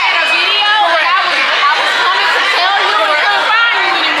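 Several women talking over one another close up, with a crowd chattering behind them.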